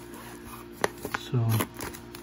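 A paper insert being handled and lifted out of a cardboard box, with a sharp click a little under a second in and a smaller one just after. A low steady hum runs underneath.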